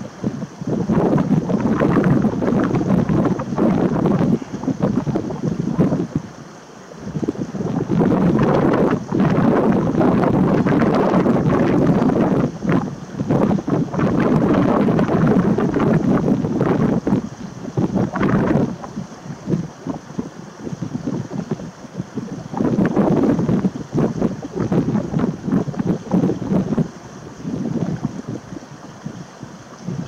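Wind buffeting the microphone in gusts, with brief lulls between them.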